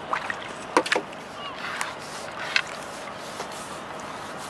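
Water splashing and dripping as a landing net with a small fish is lifted out of a river, with a few short sharp splashes in the first second.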